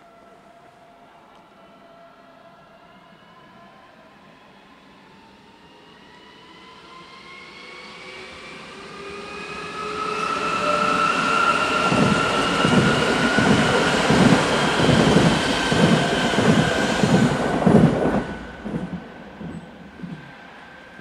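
Munich S-Bahn class 423 electric multiple unit accelerating out of the station, its electric traction drive whining in several tones that rise steadily in pitch as it grows louder. As it passes close by, its wheels clatter rhythmically at about two clacks a second, and the sound drops off sharply near the end.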